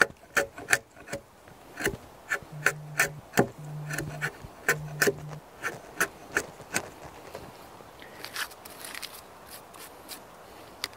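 A large framing chisel paring and scraping wood out of a joist pocket in a log. It makes a run of short scraping cuts, about three a second, that thin out near the end.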